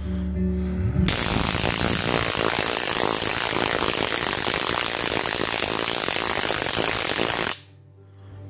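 Flashlight stun gun firing: a loud, continuous electric crackle from the arc across its prongs. It starts about a second in, lasts about six and a half seconds, and cuts off suddenly.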